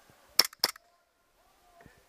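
Two shots from a WE G17 gas blowback airsoft pistol, a quarter second apart, each a sharp crack with the slide snapping back.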